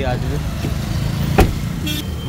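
Wind buffeting the phone's microphone as an uneven low rumble, with one sharp click about a second and a half in.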